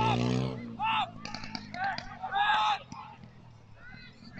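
Shouts and calls of footballers across the pitch: short raised voices in quick succession, the loudest right at the start.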